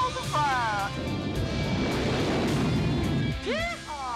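A man laughs, then the steady roar of F-14 Tomcat jet engines over orchestral film score, followed by men laughing near the end.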